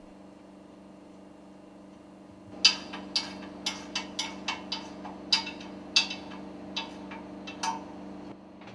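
Handling of a two-piece metal work table being fitted around a piston rod: a string of sharp metallic clicks and clinks, irregularly spaced, starting a couple of seconds in. They sit over a steady low hum.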